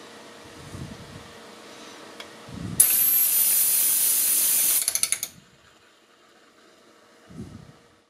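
3D-printed cup anemometer spun fast by hand: a loud hissing rush with a thin high whistle for about two seconds, breaking into a quick run of clicks as it dies away, with a few low handling thumps before and after.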